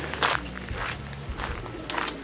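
Footsteps of a person walking, a few separate steps over a low steady background.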